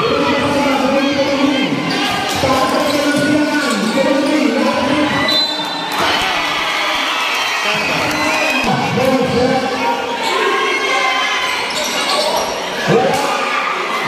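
A basketball bouncing on a concrete court amid a crowd of spectators' voices, shouting and chattering throughout, with a brief louder burst about 13 seconds in.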